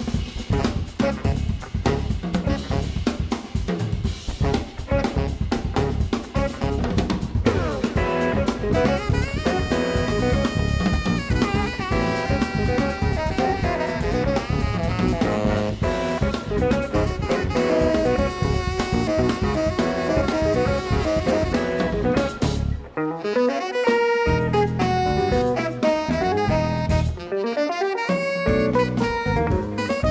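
Live jazz quartet of tenor saxophone, electric guitar, bass guitar and drum kit playing a jazz-funk piece. Drums dominate the first several seconds, then a saxophone melody comes in with the band about eight seconds in. The low end drops out for a moment around two-thirds of the way through.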